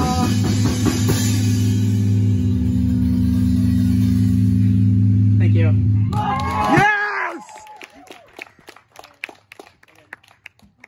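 A live rock band's final chord on electric guitars and drums, held and ringing steadily, then cut off about seven seconds in, with a shout as it ends. Scattered hand claps follow.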